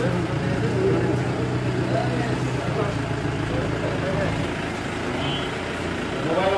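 Indistinct background voices over a steady low hum, like an idling engine.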